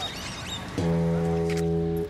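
A low, steady horn tone that starts a little under a second in and holds for over a second, part of a repeating pattern of a long tone followed by a short one at another pitch. Faint high chirps sound early on.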